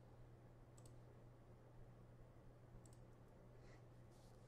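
Near silence: room tone with a steady low electrical hum and two faint, short clicks, one about a second in and one near three seconds.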